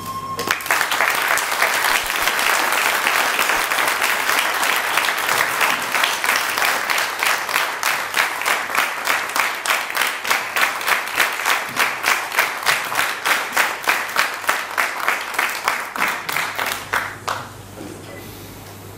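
Audience applauding. From about six seconds in, the applause turns into rhythmic clapping in unison, about three claps a second, which dies away near the end.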